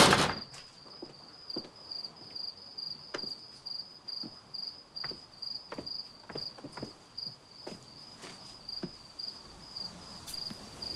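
Crickets chirping in a steady, pulsing high trill, with soft footsteps coming every half-second to second. A loud door bang right at the start.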